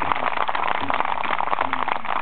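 Crowd applauding: a dense run of hand claps with a few voices calling out among them.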